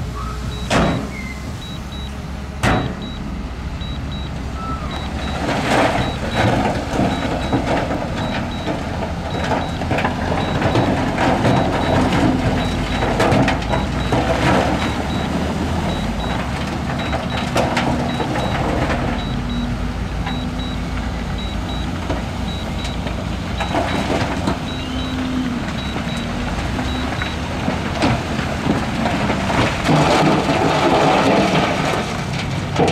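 Diesel engines of heavy dump trucks and a wheel loader running steadily, while rock and dirt loads slide out of raised tipper beds with repeated knocks and clattering.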